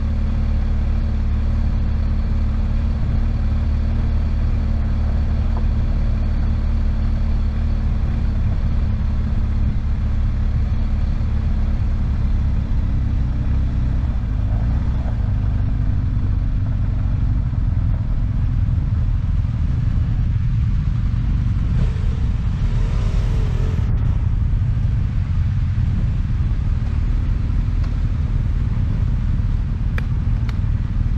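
Motorcycle engine running while riding on a gravel road, under heavy low wind rumble on the camera microphone. The steady engine note fades about halfway through as the bike slows to a stop.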